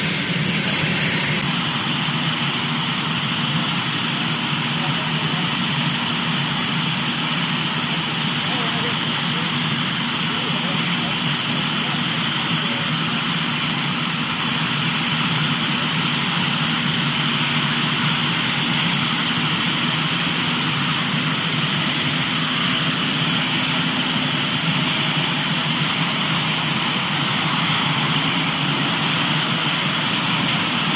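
Helicopter turbine engines running on the ground: a loud, steady rush with a thin high whine over it, growing slightly louder in the second half.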